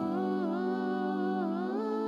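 Outro music: a steady low held note under a slowly wavering melody, the whole chord shifting to new pitches near the end.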